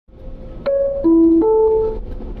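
Three-note electronic chime of a PostAuto bus's passenger-information system, sounding before the next-stop announcement. The notes go high, low, then middle, each ringing on into the next, over a low steady rumble.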